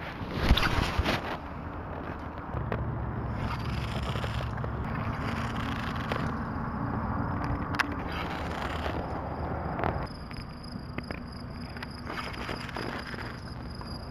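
A baitcasting rod and reel cast: a sudden swish with the line running off the spool in the first second and a half, then the reel cranked in steadily, with a low steady hum underneath for several seconds.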